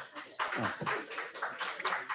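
Faint, indistinct voices off-microphone in a hearing room, with a few light clicks.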